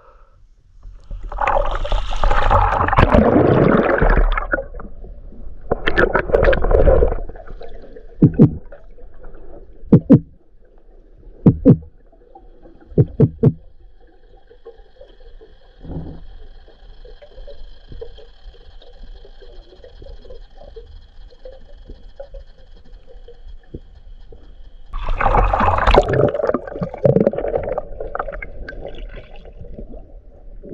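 Water rushing and gurgling around an underwater camera as a spearfisher dives with a speargun, with a few sharp clicks between the surges and a faint steady whine in the quieter middle stretch.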